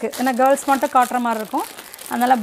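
A woman talking while clear plastic garment packaging crinkles in her hands as she lifts and turns a packet.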